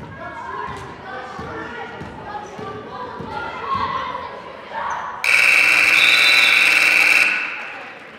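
Gym scoreboard buzzer sounding once, loud and steady, for about two seconds starting about five seconds in, then dying away in the hall's echo. Before it, voices and a basketball bouncing on the hardwood court.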